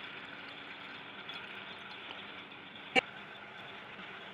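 Quiet steady room tone, with one sharp tap about three seconds in, a glass pipette knocking against a glass beaker.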